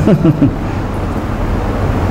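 The tail of a spoken word, then a steady low rumble and hiss of background noise with a low hum, under the man's quiet laughter.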